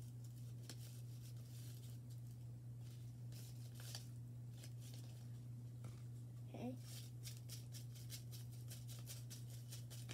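Faint rustling and crinkling of paper and plastic bag pieces being handled and stuffed into a paper pouch, with many small scattered clicks, over a steady low hum.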